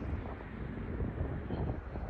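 Wind buffeting the microphone outdoors: an uneven low rumbling noise with no distinct events.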